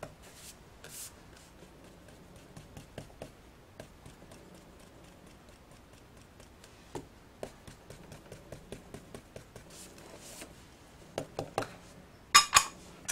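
Faint rubbing strokes of a hand tool across glossy cardstock, with small clicks and taps as the card is handled and shifted; the taps come more often in the second half and grow louder near the end.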